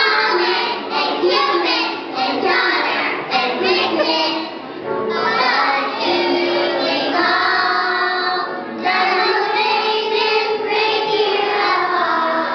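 A group of young children singing a song together, with one long held note about midway.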